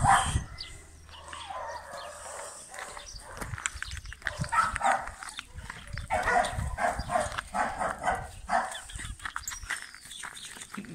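A dog making short, repeated sounds close to the microphone, coming in quick runs in the second half.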